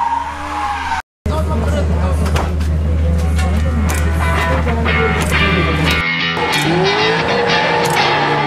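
A drift car's engine revving, with tyre squeal, for about a second. After a brief cut to silence, rock music with a heavy steady beat plays. Near the end, the rising and falling revs of a drifting car return under the music.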